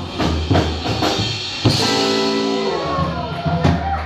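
Rockabilly band playing live with upright bass, electric guitars and drum kit. A sudden loud crash comes about one and a half seconds in, followed by held notes that bend down and fade.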